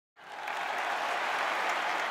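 Audience applause that fades in within the first half second and then holds steady.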